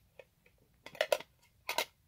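Small metal trading-card tin handled and turned over in the hands: a handful of light clicks and taps, the loudest about a second in and near the end.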